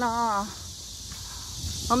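Cicadas singing in chorus: a steady, high-pitched hiss-like drone that fills the pause between a woman's words, her voice trailing off in the first half-second and starting again at the very end.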